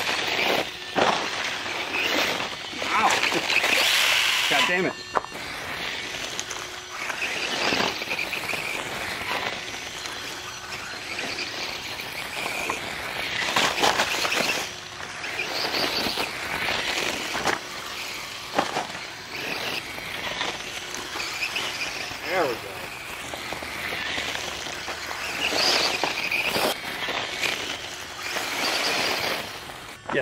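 Losi Promoto MX RC motorcycle's electric motor whining and its tyres scrabbling on loose gravel, rising and falling in surges as the throttle is worked.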